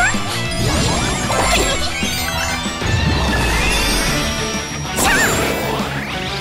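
Animated action-scene music layered with cartoon sound effects: crashes and hits, wavering magical zaps, and a sharp impact about five seconds in.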